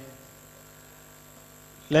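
Faint, steady electrical hum from a handheld microphone's sound system, heard in a gap in a man's speech. His voice trails off at the start and comes back just before the end.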